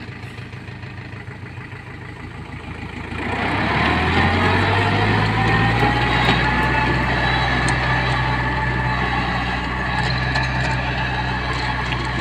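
Iseki NT548F tractor's diesel engine running with its rear rotary tiller and bed-forming plates churning through grassy soil. About three seconds in it gets much louder, the engine's pitch rising a little, and stays loud and steady.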